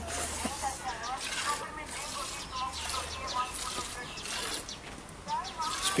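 Water buffalo being hand-milked: jets of milk squirting into a steel pot, a rhythmic hiss of about two squirts a second.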